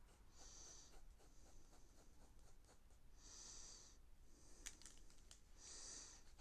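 Faint pencil sketching on paper: three soft scratchy strokes, about half a second in, around three seconds and near the end, with light ticks of the pencil tip between them.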